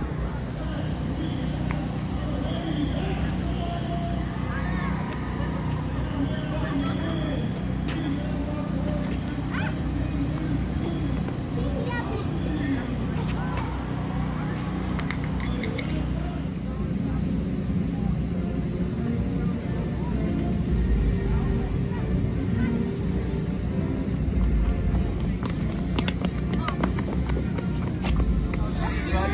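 Indistinct voices and chatter mixed together, over a steady low rumble.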